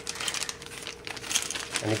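A clear plastic parts bag crinkling as it is handled and turned, a quick run of small crackles. A spoken word comes in near the end.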